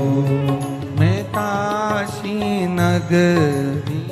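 A Hindi devotional Shiva bhajan: a singer holds long notes that slide between pitches, changing about once a second, over steady instrumental accompaniment.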